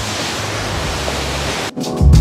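Steady rushing of a river waterfall, cut off abruptly near the end when music with a heavy beat starts.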